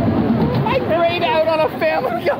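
Roller-coaster riders laughing and shouting excitedly, over a low rumble from the train.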